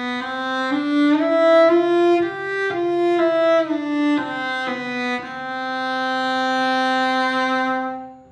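Cello bowed with a straight, controlled bow stroke, giving an even, continuous tone: about a dozen short notes stepping up and back down, then one long held note from about five seconds in that fades out near the end.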